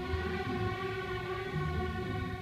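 String orchestra of violins and cellos playing long sustained notes together.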